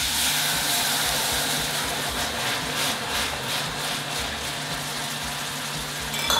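Sparkling white wine poured into a hot pot of frying shrimp shells, deglazing it: a loud, steady hiss and sizzle as the wine boils up into steam, starting sharply with the pour.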